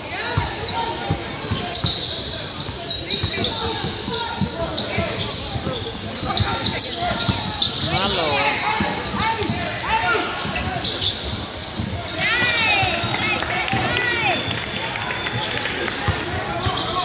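A basketball being dribbled on a hardwood gym floor, with sneakers squeaking in short bursts about halfway through and again near the end, over a background of voices in the hall.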